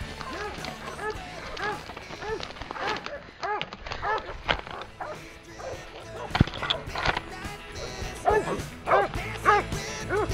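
A hunting dog barking repeatedly in quick clusters of short barks, over background music. A couple of sharp knocks stand out about six and seven seconds in.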